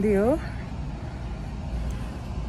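Taxi driving along a street, heard from inside the cabin: a steady low rumble of engine and road noise. A woman's voice trails off in the first half second.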